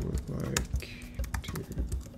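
Typing on a computer keyboard: a rapid, irregular run of keystroke clicks as a sentence is typed.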